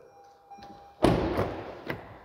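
A car door on a 2020 Toyota RAV4 thudding about a second in, the sound dying away over the next second, then a sharp latch click near the end.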